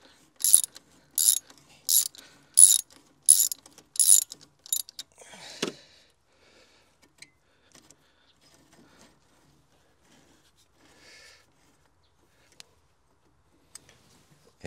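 Socket ratchet wrench on an extension turning a 12 mm thermostat-housing bolt: a short burst of ratchet clicks on each back-stroke, about seven strokes roughly two-thirds of a second apart. The clicking stops about five seconds in, followed by a brief scrape and then only faint ticks.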